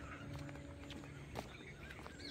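Faint outdoor field ambience: distant birds chirping, a low steady hum and a few soft clicks.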